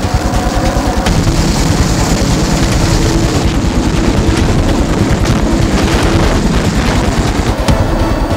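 Hovering military helicopter: rotor blades beating in a fast, steady chop over the turbine's whine, heard while troops fast-rope from its cabin door.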